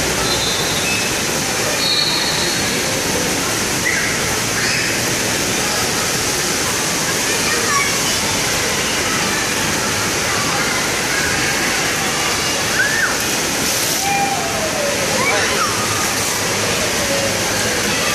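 Steady rush of running and splashing water from a children's water play area, with scattered voices and shouts of people in the background.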